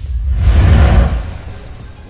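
Logo-sting sound effect: a deep whooshing swell with a heavy low rumble, loudest about half a second to a second in, then dying away.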